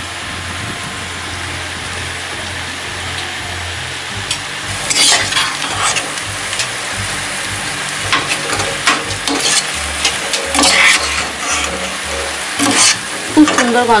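Spiced mutton pieces sizzling as they fry in a pressure-cooker pot. From about five seconds in, a metal spatula scrapes and stirs them in repeated strokes against the pot.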